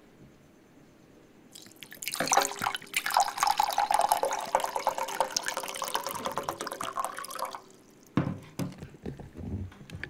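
Liquid poured from a plastic jug into a steel tumbler: a steady splashing stream starting about two seconds in and stopping a little after seven seconds. A few dull knocks follow near the end.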